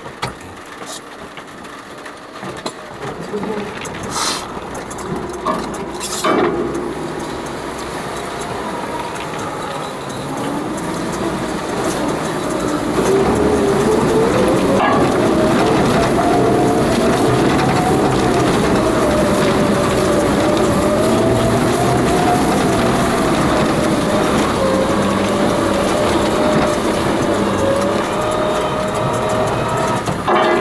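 Car driving through deep floodwater, heard from inside the cabin: from about ten seconds in the engine note rises and wavers under load, and a few seconds later the sound swells into a loud, steady wash of water against the car that lasts to the end. Two sharp knocks come a few seconds in.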